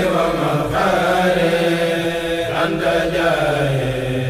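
Voices chanting a Mouride khassida, an Arabic Sufi devotional poem, holding long drawn-out notes that slide slowly in pitch, with a new phrase entering about two and a half seconds in.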